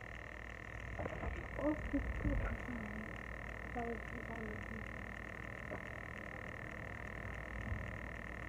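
A steady, high-pitched animal chorus from outdoors, unbroken throughout, under a few soft spoken words.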